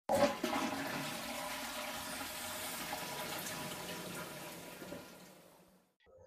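Toilet flushing: a sudden rush of water that runs on steadily, then fades out over the last second or so.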